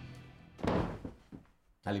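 A music sting fades out, then about half a second in comes a single soft thud of a person dropping onto an upholstered sofa.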